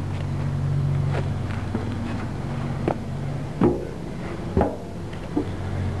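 A steady low machine hum runs throughout, under about half a dozen scattered knocks and footfalls on steel as someone climbs up onto a rusted blast drill's deck.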